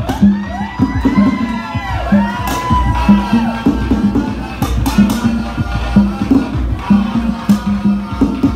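Afro-Cuban rumba music driven by a repeating pattern of low pitched drum strokes and sharp clicks, with the crowd whooping and cheering over it in the first three or four seconds.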